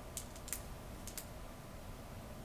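A few faint, quick clicks in the first second or so, over low room hiss.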